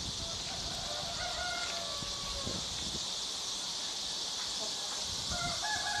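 A rooster crowing twice, each crow a long drawn-out call: one starting about half a second in, another starting near the end, over a steady high hiss of rural background.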